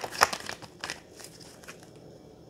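Tarot cards being shuffled and handled close to the microphone: a run of quick card snaps and rustles in the first second, fading to faint handling noise.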